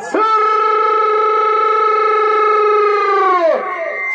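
A man's long drawn-out call over the loudspeaker system: the pitch swoops up, holds steady for about three seconds, then drops away near the end.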